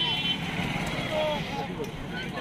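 Crowd voices chattering along a busy road, with a motorcycle engine running past close by. A brief high-pitched tone sounds right at the start.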